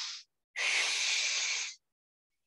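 A woman's audible breathing close to the microphone: the tail of one breath just at the start, then a longer, steady exhale lasting about a second, paced breaths taken while holding a stretch.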